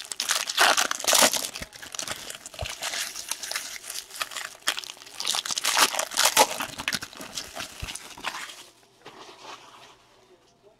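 Foil wrappers of 2016 Bowman Draft jumbo card packs crinkling and tearing in the hands as packs are opened, in irregular crackly spurts that die down near the end.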